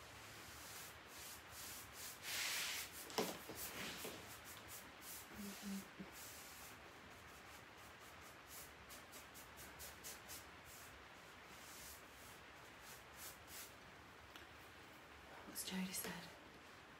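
A bristle paintbrush brushing chalk paint onto bare wood in short, quick strokes: a faint, soft, scratchy rubbing.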